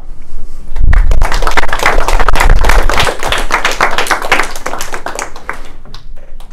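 Small audience clapping at the end of a talk. It starts about half a second in, is loudest over the next two seconds, then thins out and dies away near the end.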